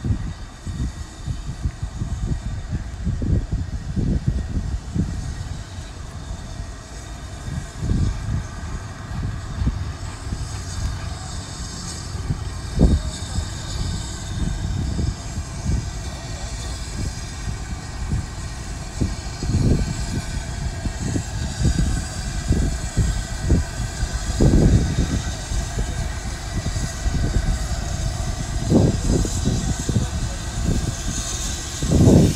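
Two steam locomotives, LMS Royal Scot 4-6-0 No. 46100 and BR Standard Britannia Pacific No. 70000, running slowly coupled together with no train. Their sound is a steady noisy rumble with irregular low surges, not an even beat.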